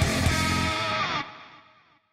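Intro music with a steady beat that cuts off a little over a second in, its tail fading quickly to silence.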